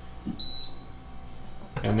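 Wine cooler's touch control panel giving one short, high electronic beep as its temperature button is pressed, about half a second in.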